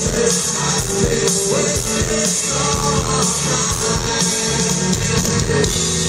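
Live rock band playing loudly through a large stage PA: electric guitar, bass and drum kit with a steady beat, and the singer's voice.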